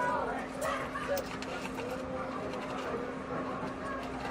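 Faint, muffled voices over a steady low hum, heard from inside a car.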